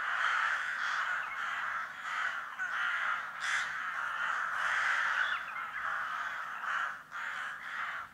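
A flock of crows cawing, many calls overlapping into a continuous, pulsing chorus with a brief lull about seven seconds in.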